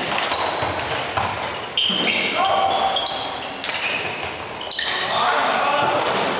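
Sounds of an indoor floorball game in a large, echoing sports hall: players' shoes squeaking in short high chirps on the hall floor, with players calling out.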